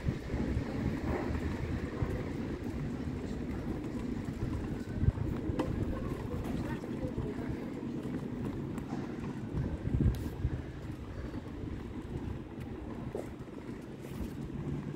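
Town street ambience: a steady low rumble of wind on the microphone and distant traffic, with faint voices. A couple of thumps stand out, about five seconds and ten seconds in.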